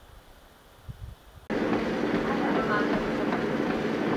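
Faint wind rumble, then from about a second and a half in a treadmill running under a runner, belt and motor noise with footfalls, loud and steady.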